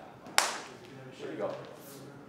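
A single sharp hand clap about half a second in, with a short ring after it, followed by faint talk.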